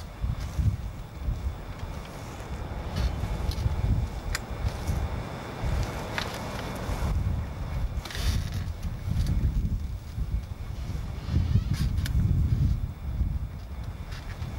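Wind buffeting the microphone in uneven gusts, with a few sharp clicks.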